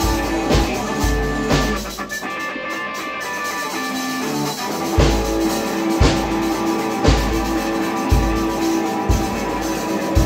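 Amateur rock jam on a Sonor drum kit and an electric bass guitar. The drums drop out for a few seconds while the bass holds its notes, then come back in about halfway through with heavy kick and cymbal hits about once a second.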